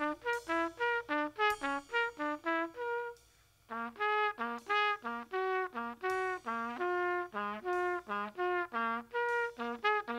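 Trumpet playing a fast free-jazz improvised line of short, separate notes, about three or four a second, that leap up and down in pitch, with a brief break just after three seconds in. A drum kit with cymbals is played underneath.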